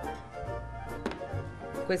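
Background music with a steady bass line, and a few light knocks of metal pots being set down and moved on a glass induction hob.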